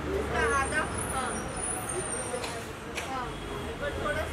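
Indistinct voices talking over the steady low rumble of a vehicle engine in street traffic.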